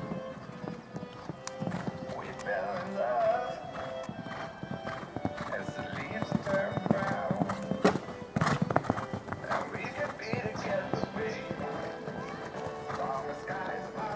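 A horse's hoofbeats on a sand arena at a canter, with a pop song playing over them; the loudest thuds come about eight seconds in, as the horse clears a fence and lands.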